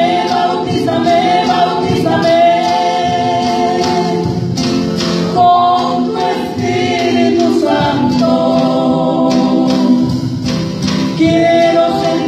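Live church praise song: singers holding long notes over a band with a drum kit.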